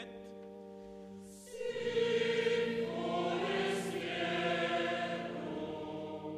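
Mixed choir singing with chamber orchestra accompaniment in a stone abbey church. A quieter held chord opens the passage, the choir comes in loudly about a second and a half in, and the sound eases off near the end.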